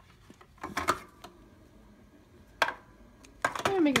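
A few short plastic clicks and knocks from buttons being pressed on a portable CD boombox with a hard plastic action figure, spread out with quiet between them.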